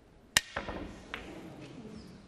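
Snooker cue tip striking the cue ball in a miscue: one sharp, loud click about a third of a second in. Two fainter knocks of the balls follow within the next second.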